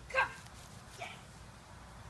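A dog giving a sharp, high yelp that falls in pitch, then a shorter, quieter yip about a second later.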